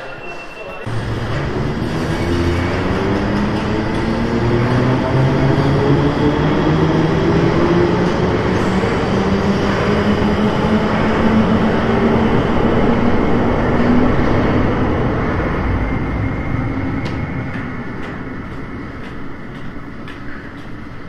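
London Underground Bakerloo line train accelerating. The rumble of the running train starts suddenly, and the motor whine climbs steadily in pitch over about ten seconds, then levels off and fades toward the end.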